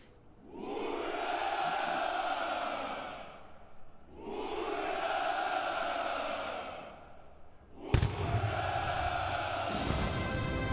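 Massed sailors shouting a long drawn-out "Ura!" in chorus three times, each cheer lasting two to three seconds: the traditional Russian naval hurrah. A single sharp bang, the loudest moment, comes just before the third cheer.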